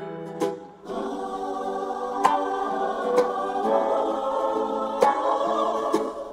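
Music: a choir singing held chords over a backing, with a few sharp percussive hits.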